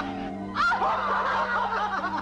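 A woman's snickering, chuckling laughter over background film music with a held low note.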